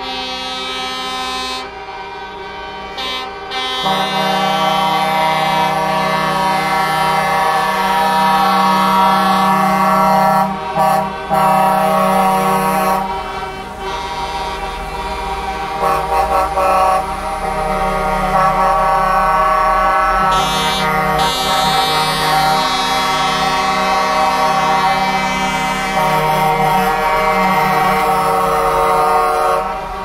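Heavy trucks in a slow convoy sounding their air horns in long, overlapping blasts, several pitches at once, over the running of their diesel engines. The horns break off briefly a few times.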